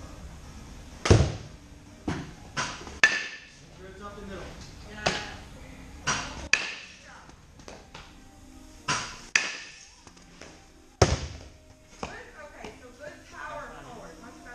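Baseball bat hitting pitched balls in a batting cage: a sharp knock about every five seconds, loudest about a second in and again near the end, each followed by softer knocks of the ball landing and bouncing.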